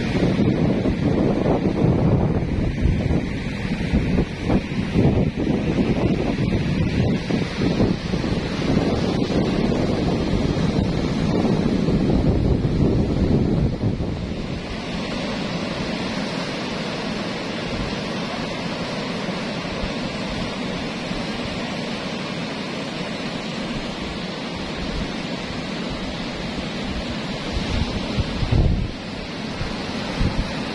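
Strong sea wind buffeting the microphone in loud gusts for about the first half, then a steadier rushing of wind and breaking surf below, with one more strong gust near the end.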